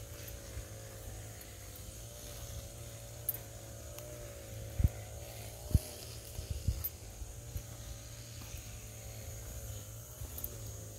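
Footsteps and handling bumps of a walker on a dirt forest path, with three sharp thumps around the middle, over a steady low rumble and a faint wavering hum.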